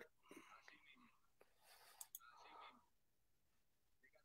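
Near silence: the played clip's audio is not coming through, leaving only very faint traces of a voice.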